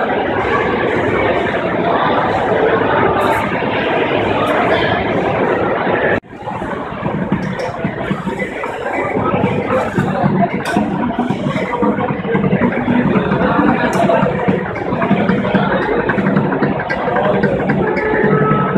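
Crowd hubbub echoing in a large stadium concourse, cut off abruptly about six seconds in, followed by a steady rush of road traffic on elevated highways.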